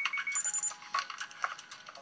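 Short electronic computer beeps at three different pitches, one after another, over fast irregular clicking like keyboard typing.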